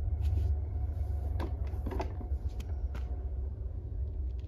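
A few light clicks and knocks from handling a Halloween animatronic's fabric-covered wire-hoop cauldron frame, over a steady low rumble.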